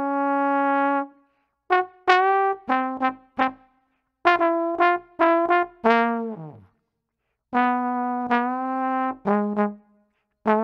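Solo trombone playing crisply tongued jazz section figures, with scoops bending up into notes from one slide position below the target. About six seconds in, a fall drops quickly down in pitch off the end of a note.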